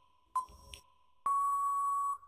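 Quiz countdown-timer sound effect: a short electronic beep, then about a second later a louder, longer steady beep signalling that time is up.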